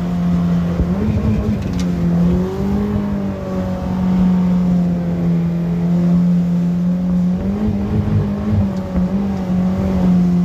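Mercury outboard jet motor running under way, a steady low engine note whose pitch rises briefly about a second in and wavers up and down again near the end.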